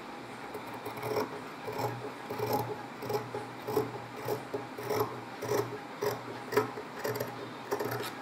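Fabric scissors cutting through cloth in a steady run of crisp snips, about one every half second, starting about a second in.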